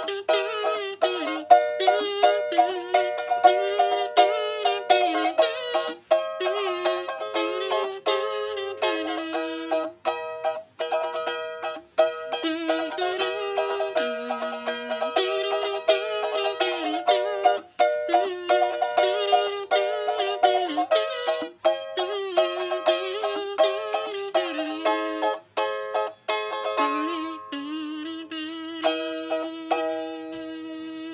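Metal kazoo buzzing out a pop melody over steadily strummed ukulele chords, holding one long note near the end.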